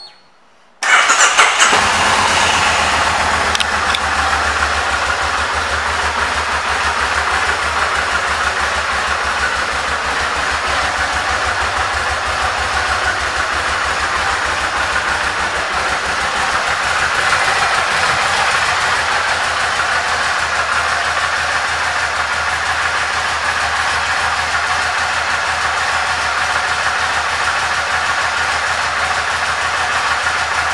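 Kawasaki Vulcan 1600 Nomad's V-twin engine starting about a second in, with a brief higher flare, then idling steadily with a low, even pulsing beat.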